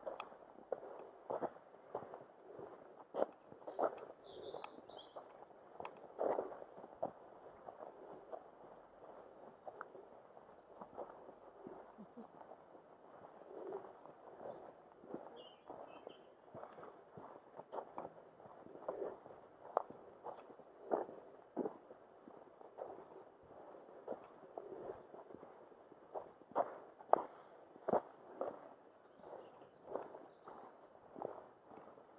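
Footsteps on a dirt woodland track, a steady walking pace of about one step a second, picked up by a camera on the walker's rucksack. A few faint bird calls come in about four seconds in and again midway.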